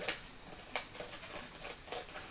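Scissors snipping through a plastic packet: a few short, soft cuts and clicks.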